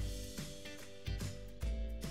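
Background music playing during the quiz's answer timer, with held notes and a beat of low thumps.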